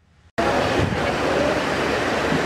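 A moment of silence, then about a third of a second in a steady din of background room noise cuts in abruptly: the camera's live sound of a busy hall, indistinct voices blurred into noise.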